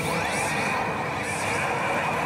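Pachislot machine sound effects over the steady, dense din of a pachinko parlor full of machines, with a rising sweep just after the start.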